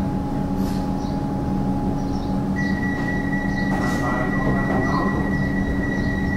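Steady hum of a stationary Alstom Comeng electric train's onboard equipment, heard from inside the carriage, with a steady high-pitched tone joining about two and a half seconds in.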